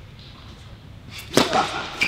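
Tennis racket striking the ball on a serve: one sharp pop about one and a half seconds in, echoing around the indoor court hall.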